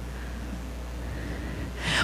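A pause in a talk through a PA: a steady low hum with faint room noise, and a quick intake of breath into the microphone near the end.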